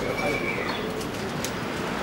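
A bird calling, with a held high note in the first half-second, and a single sharp click about one and a half seconds in.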